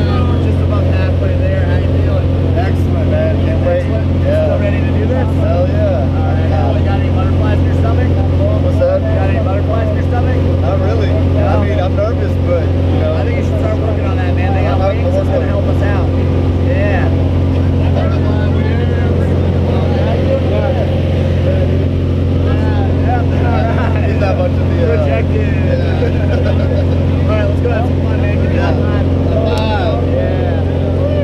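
Single-engine jump plane's piston engine and propeller droning steadily inside the cabin during the climb to altitude, with a voice over it.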